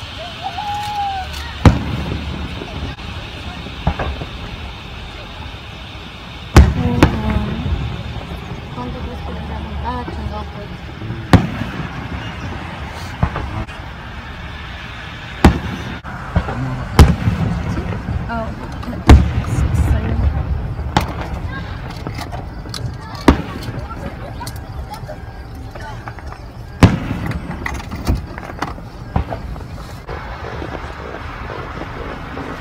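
A dozen or so sharp knocks and clicks at irregular intervals, like objects being set down or handled, over a low rumbling background with faint, indistinct voices.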